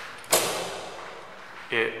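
A glass door with an electromagnetic lock is pushed open: a sudden clack about a third of a second in, then a rush of noise that fades over about a second.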